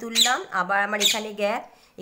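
A woman speaking, her narration breaking off into a short pause near the end.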